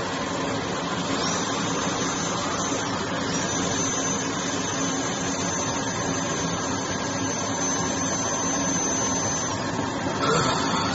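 External dental oral suction unit running with a steady rushing hum, with the thin high whine of a dental handpiece coming in about a second in, breaking off briefly near three seconds, then holding until shortly before the end.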